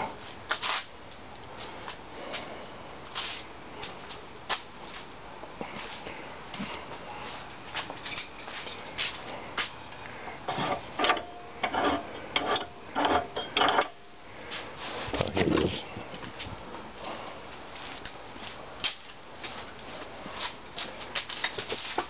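Scattered knocks, clicks and clatter of tools and metal pipe being handled and shifted around a workbench, busiest about halfway through, with one heavier thump shortly after.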